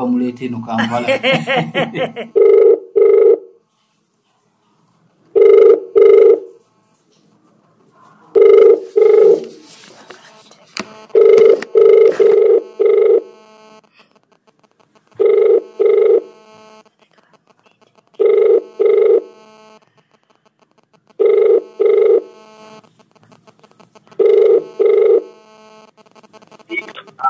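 Telephone ringback tone heard on a phone line: a double ring repeated about every three seconds, eight times, as the call rings unanswered.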